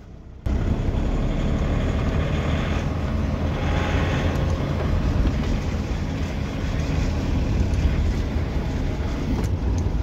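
In-cab driving noise from an Ashok Leyland Dost Smart light diesel pickup at low speed on a rough unpaved road: a steady rumble of engine and road with rattling. It cuts in suddenly about half a second in.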